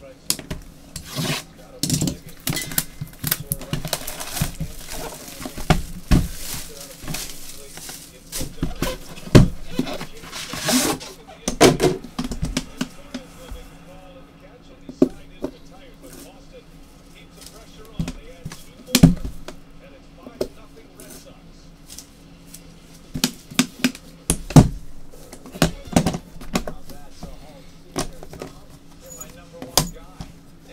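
Cardboard packaging being handled and slid open by gloved hands: scattered knocks and taps, with a longer sliding, scraping rush about ten seconds in.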